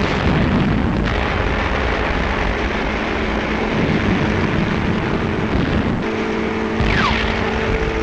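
Battle sound effects: a continuous rumble of engines and explosions. A steady engine drone joins about three-quarters of the way through, and a falling whistle comes near the end.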